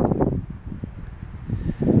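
Wind buffeting the camera microphone: a low rumble that eases off in the middle and picks up again near the end.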